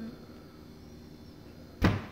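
Quiet room tone, then a single short, sharp thump near the end.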